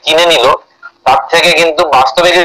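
A man speaking Bengali, in two stretches with a short pause just before the middle.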